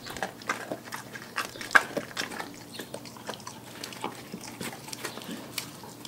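Dog biting and chewing a whole raw white fish: a run of wet crunches and clicks, the loudest a little under two seconds in, coming more sparsely in the second half.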